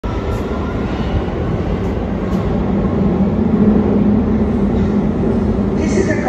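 Loud, steady rumble of a London Underground train running through the station tunnels, with a low drone that swells around the middle.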